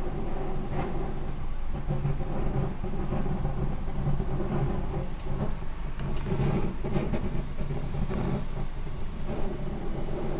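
Steady low roar of gas flame and white wine boiling hard in a small aluminium saucepan on a portable butane stove, as the wine's alcohol burns off.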